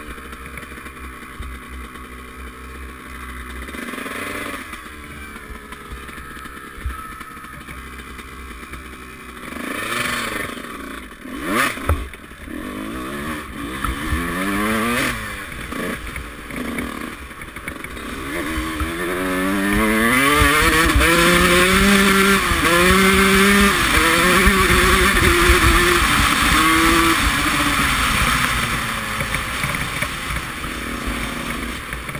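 Honda CR125's single-cylinder two-stroke engine revving up and down repeatedly while riding, heard from a helmet camera. It gets much louder from about twenty seconds in, with its pitch climbing and dropping again several times. A sharp knock comes about halfway through.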